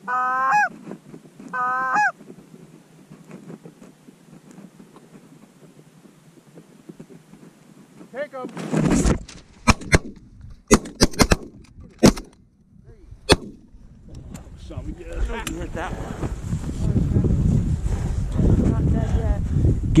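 A few goose honks, then quiet; about nine seconds in, a volley of shotgun shots, about six within four seconds, followed by a growing din of geese calling.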